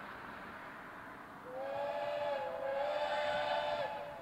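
Narrow-gauge steam locomotive sounding its chime whistle, several notes together, starting about a second and a half in and held for over two seconds with a slight dip partway through.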